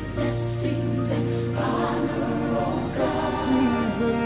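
Contemporary gospel recording: a choir singing together over band accompaniment, the voices holding long notes that move between chords.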